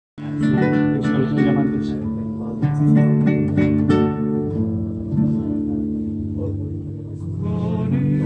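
Acoustic guitars playing the instrumental introduction of a bolero: a picked melody over chords, with quick plucked notes that thin out about halfway through into long ringing notes.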